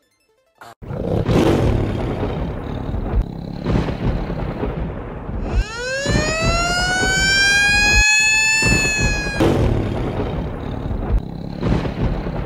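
Loud intro sound effects over music: a rumbling roar with heavy low hits, starting about a second in. In the middle a tone rises sharply and then holds for about four seconds before the rumble returns.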